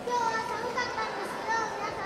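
High-pitched voices of young girls talking and calling out over a murmur of hall noise.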